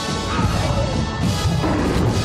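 Film trailer soundtrack: music mixed with loud crashing impact sound effects.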